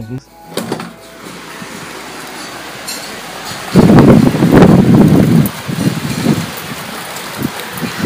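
Heavy rain pouring down steadily. A loud low rumble swells in about four seconds in and dies away over the next two seconds.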